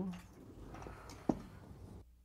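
Faint room noise with a single sharp click about a second and a quarter in.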